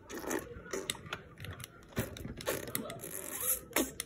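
A jointed plastic action figure being handled and posed, its limb joints giving scattered, irregular clicks, creaks and scrapes. The joints are squeaky.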